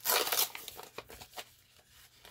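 Paper envelope being torn away from a greeting card that has stuck to it: a loud rip in the first half second, then quieter paper rustling and crinkling.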